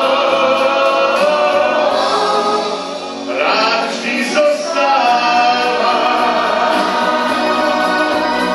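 A pop song with singing over instrumental backing, the voices holding long notes, and a brief dip in loudness about three seconds in.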